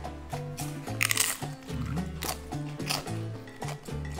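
Crunching bites into tortilla chips topped with guacamole, a few sharp crunches about a second apart, over background music.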